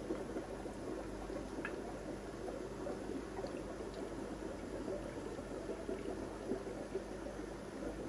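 Steady bubbling and water noise from air-driven aquarium sponge filters, with a steady low hum underneath and a few faint ticks.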